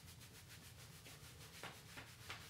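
Faint, fast rubbing of hands and knuckles over denim jeans around the top of the knee in a self-massage, in quick even strokes that fade out about halfway through.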